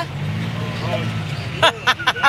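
Golf cart running with a steady low drone as it drives off. A woman's voice breaks in near the end.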